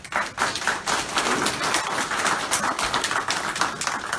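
Audience applauding, many hands clapping at once. The applause starts suddenly and keeps up steadily.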